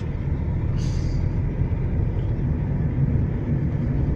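Steady low rumble of a car driving, its engine and tyre noise heard from inside the cabin, with a short hiss about a second in.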